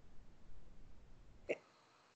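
Quiet pause in a conversation: faint low background hum, broken about a second and a half in by one short spoken syllable.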